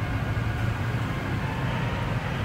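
Steady low rumble of motor scooter and motorcycle engines running in an enclosed underground parking garage.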